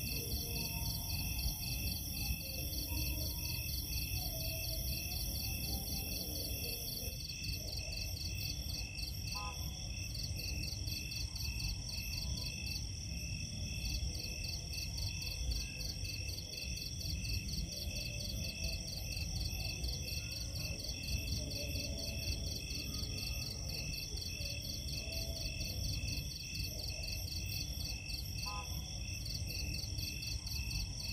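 Night insect chorus: crickets and other insects trilling in steady, rapidly pulsing high trills, over a low background rumble.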